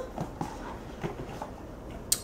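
Quiet room with a few faint, short taps and rustles, the sound of light handling of a cardboard box below the table edge.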